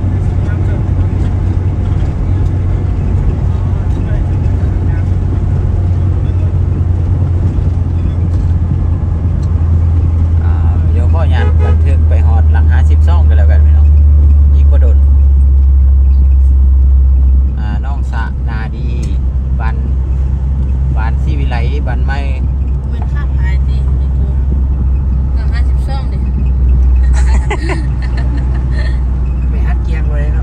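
Car driving along a paved highway, heard from inside the cabin: a steady low drone of engine and road noise. It grows louder in the middle and drops off suddenly about seventeen seconds in.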